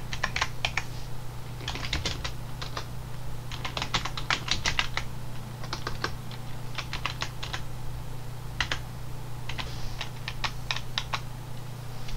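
Typing on a computer keyboard: irregular bursts of quick keystrokes separated by short pauses, over a steady low hum.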